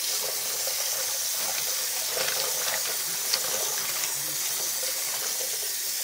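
Water running from a faucet into a partly filled sink, a steady rush with a few small clicks.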